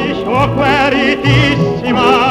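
Operatic tenor voice singing held notes with vibrato in a melodic phrase, over orchestral accompaniment.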